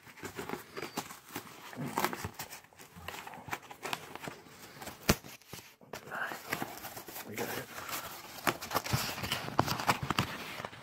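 A cardboard shipping box being opened and handled by hand: irregular scraping, rustling and knocking of the cardboard flaps.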